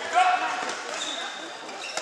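Futsal ball being kicked and bouncing on a sports hall floor during play, in an echoing hall. A loud call from a voice about a quarter second in, with more voices calling and a sharp kick of the ball near the end.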